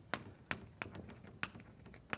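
Chalk writing on a blackboard: a quick, uneven series of sharp taps as the chalk strikes the slate with each stroke.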